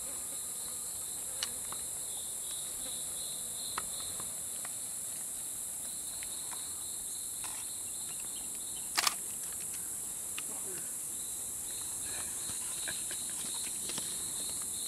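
Tropical forest insect chorus: a steady high-pitched hiss of insects with a pulsing trill below it that comes and goes. A few short clicks break in, the loudest a sharp double click about nine seconds in.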